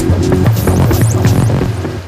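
Electronic theme music with a steady beat and heavy bass, fading somewhat near the end: the programme's closing theme.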